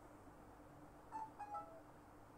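Near silence with faint room tone, broken about a second in by three or four brief high-pitched chirps in quick succession, the last one dipping in pitch.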